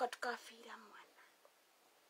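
A woman's speech trailing off quietly within the first second or so, then near silence.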